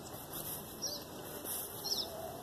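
A small bird chirping a few times, short high chirps that slide downward in pitch, over a faint outdoor background.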